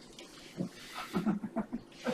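A few people chuckling briefly in short, quiet bursts, a reaction to an ironic remark.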